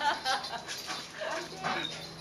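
Two German Shepherds play-fighting: scuffling, with a few short dog vocalizations about a second and a half in.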